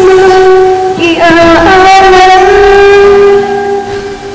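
A woman singing into a BM-800 condenser microphone, holding one long note, shifting pitch briefly about a second in, then holding another long note that drops away near the end.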